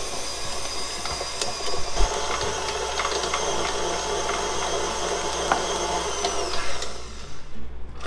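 Electric stand mixer motor running with a steady whine as its dough hook kneads bread dough in a steel bowl, then stopping about a second before the end.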